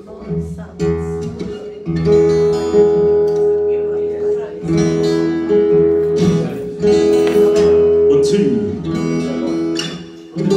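Acoustic guitar playing chords, each one ringing out, with a new chord struck every second or two.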